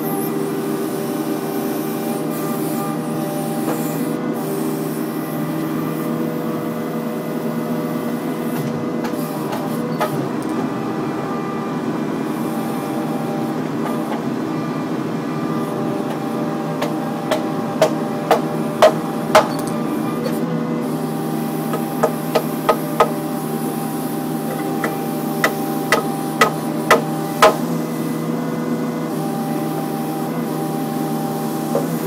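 Kubota mini excavator's diesel engine running steadily under work. In the second half come sharp knocks in quick runs of four or five, about two a second, from the bucket working the soil and stone.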